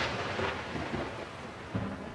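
Intro title-card sound effect: the tail of a thunder-like boom, fading away steadily.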